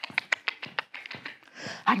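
A cockapoo's claws clicking quickly and evenly on a hard hall floor as it trots at heel, about eight to ten clicks a second, dying away about halfway through.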